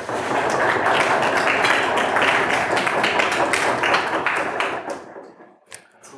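Audience applauding: a dense patter of many hands clapping that dies away about five seconds in.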